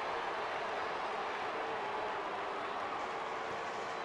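Steady crowd noise filling a baseball stadium, an even hum of many voices with no single call standing out.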